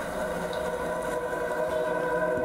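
Music playing through a JBL Clip 3 portable Bluetooth speaker: several held notes sounding together, swelling gradually louder.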